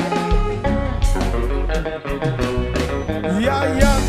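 Live konpa band playing an instrumental passage: electric guitar and keyboard over bass and drums, with a steady beat.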